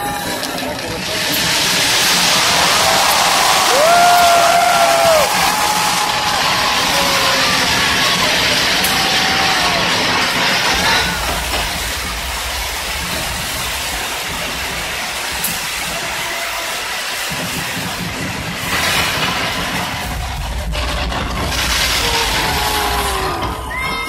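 Large outdoor crowd cheering, shouting and whooping at New Year fireworks. It is loudest in the first half, eases off after about eleven seconds, and swells again near the end.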